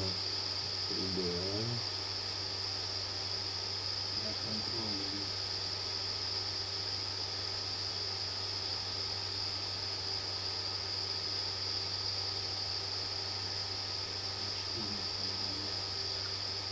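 Steady high-pitched hiss and a low electrical hum, with a few faint muttered words about a second in, around four to five seconds, and near the end.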